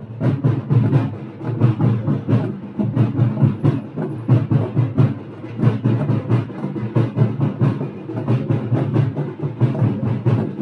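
Drums beating a fast, steady rhythm of repeated strokes, with other music under them.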